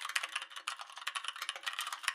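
Rapid keyboard-typing clicks, a typing sound effect, many keystrokes a second in a steady run.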